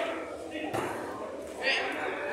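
Men's voices shouting and calling to each other on a small-sided football pitch, with one short knock a little under a second in.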